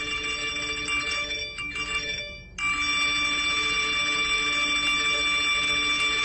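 Phone ringing: a steady electronic ringing tone, in two long stretches with a brief break just over two seconds in.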